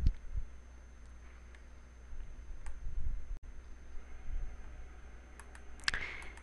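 A handful of faint computer mouse clicks, scattered singly and then several in quick succession near the end, over a low steady hum.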